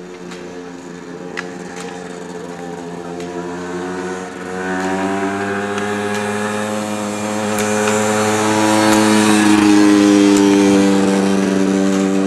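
Off-road motorcycle engine running at low, steady revs close by, growing louder and slowly rising in pitch toward its loudest point near the end, then easing slightly. A few sharp clicks of ski pole tips striking asphalt sound now and then.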